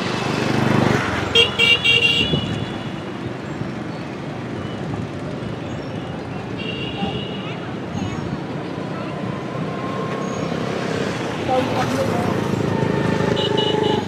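Street traffic noise with motorbike horns beeping in short bursts: a cluster of beeps about a second and a half in, another around seven seconds, and more near the end.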